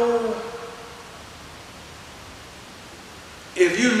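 A man preaching: a held word trails off in the first second, then a pause of about two and a half seconds filled only by steady hiss, and he speaks again near the end.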